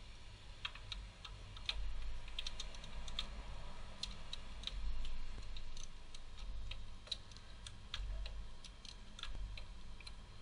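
Irregular light clicks and ticks from parts being handled at the top of the engine bay, over uneven low rumbling.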